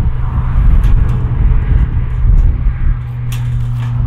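Wire cage live trap being opened by hand: a few short metal clinks and rattles from the door and rod, over a loud low rumble.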